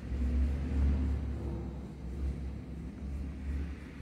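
Low, uneven rumble, strongest in the first two seconds and easing off after.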